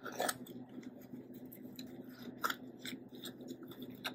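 Damp sphagnum moss being pressed by gloved hands into a small plastic pot: a run of soft crackles and rustles, with a sharper click just after the start and another about two and a half seconds in.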